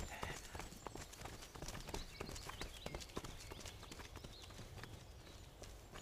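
Footsteps of several people running on a dirt path: a quick, uneven patter of light footfalls that fades as the runners move away.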